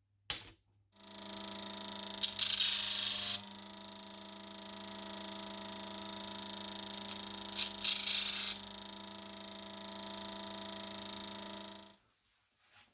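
A Parkside bench disc sander: a click, then its motor starts and runs with a steady hum and whine. Twice, about two seconds in and again about eight seconds in, a louder rasping grind lasts about a second as a small piece is pressed against the spinning sanding disc. The sound cuts off suddenly near the end.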